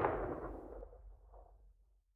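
The tail of a loud, noisy crash at the end of a track, dying away into silence by about a second and a half in, the high end fading first.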